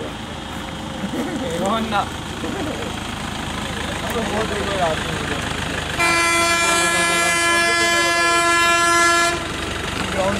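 A heavy vehicle's horn sounds one long, steady blast of about three seconds, starting about six seconds in, as a warning at a blind hairpin bend. People laugh and talk before it, over a background rumble of traffic.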